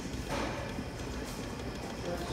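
Steady whir of a cooling fan, with faint clicks as a control-panel arrow button is pressed to step the voltage setting up.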